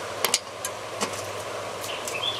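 Socket ratchet wrench working a spindle-housing bolt on a lawn tractor's mower deck: a handful of short, sharp metallic clicks at uneven intervals over a steady low hum.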